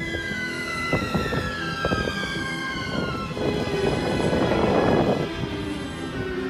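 A vehicle's motor whine falling steadily in pitch over about three seconds as it slows, over background music, with a louder burst of hiss about four seconds in.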